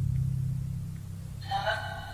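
A low steady drone, then about one and a half seconds in a brief voice coming through a ghost-hunting device, heard as the name 'Anna' in answer to the question of who is there.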